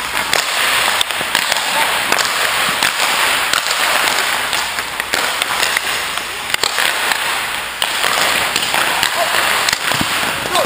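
Hockey sticks clacking sharply against pucks a handful of times, with skate blades scraping on the ice over a steady hiss of rink noise.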